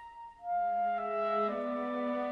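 Orchestral film-score music: a held note dies away, and about half a second in a new phrase of sustained notes enters, stepping to new notes about every half second.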